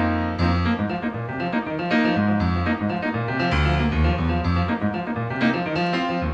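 Keyboard played in rhythmic, percussive chords, both hands striking together.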